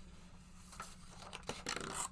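A sheet of paper being flipped over and handled on a display board: a faint rustle, then a few crisp crinkles and taps in the last half second.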